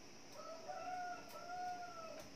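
A faint, drawn-out animal call in two joined parts, each held at a steady pitch, lasting nearly two seconds.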